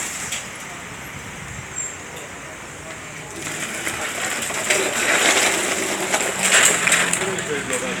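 Burnt metal debris scraping and clattering on paving stones as it is dragged, in two rough stretches in the second half, over steady street traffic noise.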